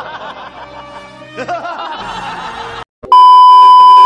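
A group of men laughing heartily for about three seconds. After a brief cut to silence, a very loud steady test-tone beep sounds for about the last second.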